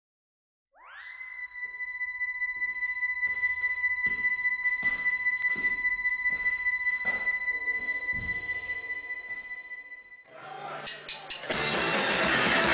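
Electric guitar feedback from a punk rock band's amp: a tone slides up about a second in and is held steady for some nine seconds over scattered knocks. Near the end the band starts playing, a few drum hits and then guitar and drums loud together.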